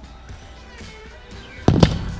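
Background music, then about 1.7 seconds in a sharp, loud double impact as an object dropped from the tower hits the sandy ground.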